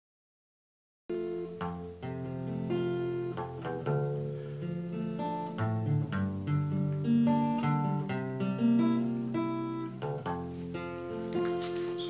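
Nylon-string classical guitar playing chords in G major, starting about a second in and running on as a steady picked and strummed chord progression.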